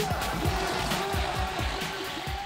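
Upbeat background music with a steady beat and repeating swooping synth tones, gradually getting quieter.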